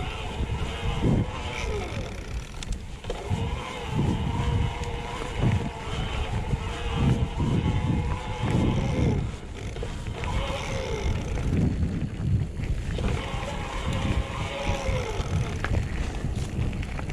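Mountain bike rolling fast down a grassy singletrack, with wind and trail rumble on the camera microphone and jolts from bumps. Over it, a steady high buzz from the rear freehub ratchet while coasting; it sags in pitch and cuts out several times as the bike slows or the rider pedals.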